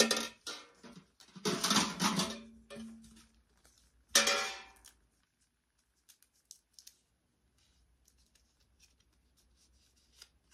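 Thin metal pails clanking and ringing as they are handled, twice in the first half. Then faint crinkling ticks of paper decal backing being peeled.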